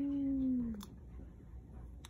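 A cat restrained in a towel for an eye-pressure test gives one long meow of protest that rises and falls in pitch, dying away about a second in. A single faint click follows.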